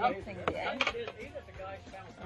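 A few sharp clicks and taps as hands work at the plastic ribbon tied round a cardboard cake box, under faint background voices.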